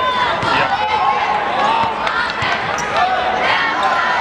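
Basketball game on a hardwood court: rubber-soled sneakers squeaking many times in quick succession as players cut and drive, with the ball dribbled and voices in the arena underneath.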